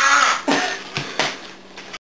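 A young man giving short rough cries and grunts, the longest and loudest at the start and two shorter ones after, with a short sharp knock about a second in.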